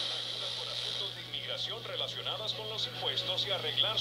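Faint broadcast voice from the small built-in speaker of a Casio SY-4000 handheld TV on weak analog reception, with a steady high whine and a low hum underneath.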